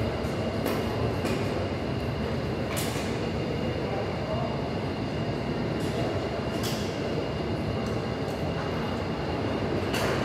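Steady background din of a busy gym, with a few sharp clinks and clicks from the equipment scattered through it.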